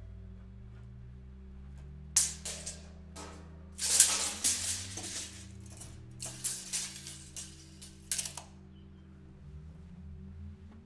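Background music with sustained low tones, broken by several short bursts of rattling and scraping, consistent with a steel tape measure being pulled out and retracted.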